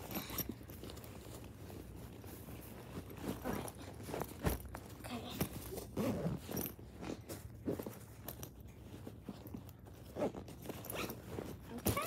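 Zipper and fabric of a stuffed JanSport backpack being handled and zipped, with irregular rustling and knocking as things are pushed inside.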